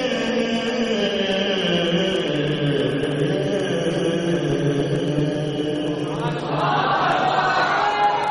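Men's voices chanting an Urdu naat without instruments, in long, held notes that glide slowly. About six seconds in, a higher, louder voice rises above them.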